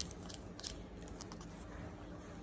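Blue-and-gold macaw's beak nibbling at a plastic jelly cup: a few sharp, small clicks, fairly quiet.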